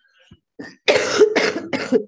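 A woman coughing three times in quick succession, starting about a second in.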